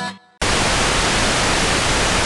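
The last strummed acoustic guitar chord dies away, then about half a second in loud television static hiss cuts in suddenly and holds steady.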